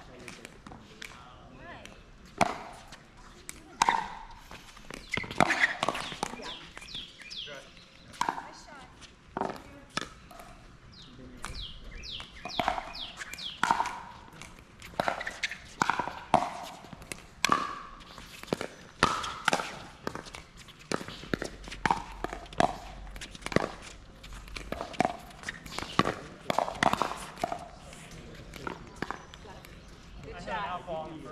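Pickleball play on an outdoor hard court: repeated sharp pops of paddles striking the plastic ball and the ball bouncing on the court, at irregular intervals, with players' footsteps and indistinct voices.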